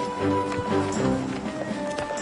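Background score music with animal hooves clip-clopping along at a steady pace.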